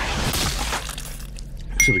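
Car engine revved, the rev peaking in the first half second and then dropping back toward idle, heard from inside the cabin. Near the end there is a sharp click with a short ringing tone.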